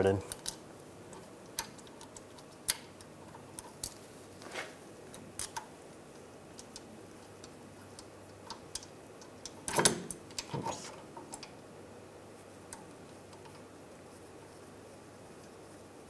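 Small metallic clicks and taps of a new brake caliper and its guide-pin bolts being handled and threaded in by hand, with a louder clatter of metal parts about two-thirds of the way in.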